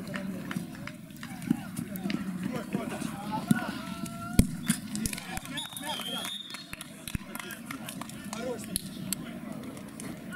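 Players' shouts and calls during a small-sided football match, with the sharp thuds of the ball being kicked; the loudest kick comes about four seconds in. A brief high, wavering whistle sounds about six seconds in.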